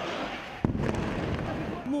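An airstrike explosion: a single sharp bang a little over half a second in, followed by a low rumble, over the noise of a crowd's voices.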